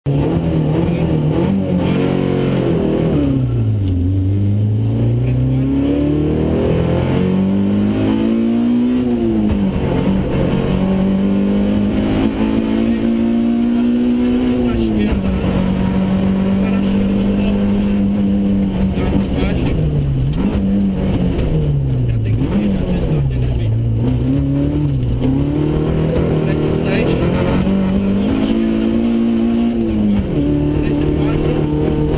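Rally car engine heard from inside the cabin, driven hard along the stage: the revs climb, drop sharply at each gear change and climb again, with a steadier stretch held in the middle, then several quick falls and rises as it slows and pulls away again.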